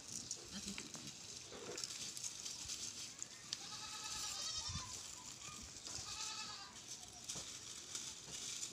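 Goats bleating: a wavering bleat about halfway through, and a shorter one about two seconds later.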